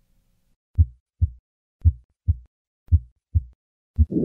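Three normal heartbeats heard through a stethoscope: each a short 'lub' (first heart sound) followed closely by a 'dub' (second heart sound), about one beat a second, with clean silence between the sounds and no murmur.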